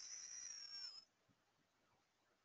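Near silence: a faint high-pitched hiss dips slightly and fades out about a second in, then dead silence.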